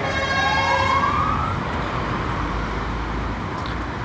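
Emergency vehicle siren wailing over street traffic noise. Its pitch rises over the first second and a half, then the siren fades into the steady rumble of the street.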